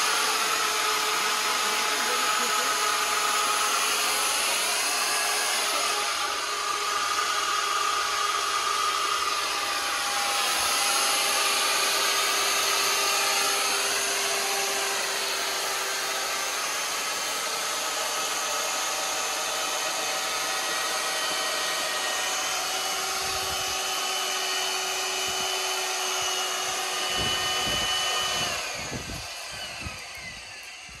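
Corded electric drill driving a reduction gearbox that screws a steel screw pile into the ground: a steady motor whine whose pitch sags and recovers a few times. It stops near the end, followed by a few knocks.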